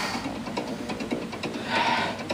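Background music with a steady beat, no voice over it.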